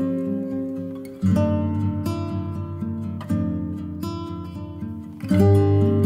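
Background music on acoustic guitar: picked notes and strummed chords, with a fresh chord struck about a second in and another near the end, each ringing out and fading.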